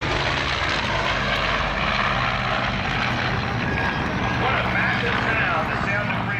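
Engine of a small aerobatic airplane making a pass overhead, a steady, even drone. About four and a half seconds in, a voice starts over it.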